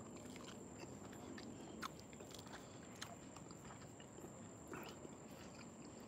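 Faint chewing of fruit: quiet mouth sounds with a few soft clicks or smacks.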